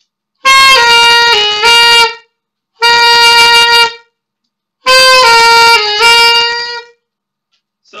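Mendini by Cecilio alto saxophone, with its stock mouthpiece, played loudly by a beginner in three short phrases. The first and last step down through a few notes and back up, and the middle one is a single held note.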